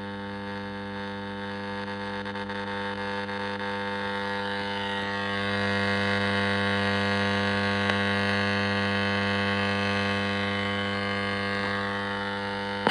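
Weston four-band transistor radio being tuned between stations: a steady buzzing mains hum with hiss, with a faint whistle gliding in pitch around the middle, growing louder about halfway through.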